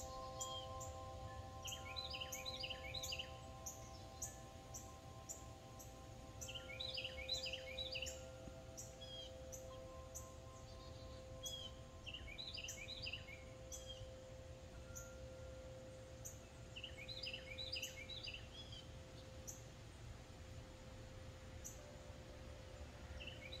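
Faint outdoor birdsong: a bird repeats a short run of chirps about every five seconds, four times. Underneath are a few steady ringing tones and a low background rumble.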